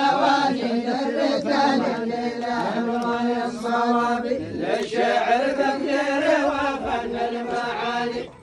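A line of men chanting a poem in unison, their voices drawn out on long held notes. The chant breaks off right at the end.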